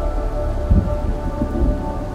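Steady rain with low thunder rumbles, one a little under a second in and another near the end, under a faint held orchestral note.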